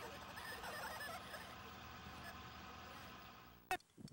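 Low steady hiss and hum of a worn VHS tape playing through a stretch of picture distortion, with faint indistinct voices about half a second to a second in. The noise fades out and a single sharp click, the tape edit, comes near the end.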